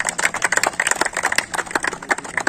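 A small group of people applauding: a dense, uneven run of quick hand claps.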